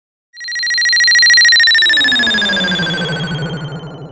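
Electronic transition sound effect: a high tone with a rapid warble starts suddenly and slides slowly down in pitch, while a lower tone glides down beneath it, fading toward the end.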